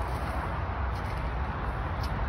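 Steady low outdoor background rumble with no distinct events.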